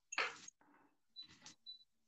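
A short noisy burst just after the start, then two short high-pitched beeps about half a second apart from a touch-control hob's heat setting being turned up.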